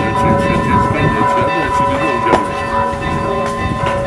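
Church bells ringing, several overlapping sustained tones with a fresh strike a little past the middle.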